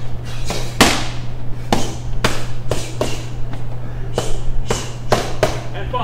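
Boxing gloves smacking into focus mitts in quick combinations: about a dozen sharp hits at an uneven pace, over a steady low hum.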